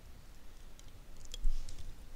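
Stylus on a pen tablet: a few light clicks and taps, clustered around a second in, the loudest about one and a half seconds in.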